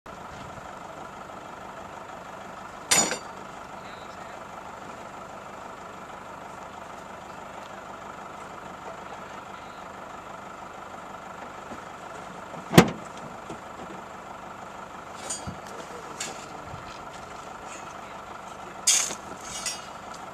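A distant off-road vehicle's engine runs steadily at the top of the slope. Two sharp knocks break in, about 3 s and 13 s in, and a few short scrapes or crunches on stony ground come near the end.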